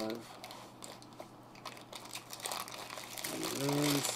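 A clear plastic bag crinkling and rustling as a camera lens wrapped in it is pulled out of a small box, with light scrapes and clicks of handling.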